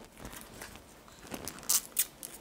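Protective plastic film being peeled off a phone charger: faint rustling with a few short, sharp crinkles in the second half.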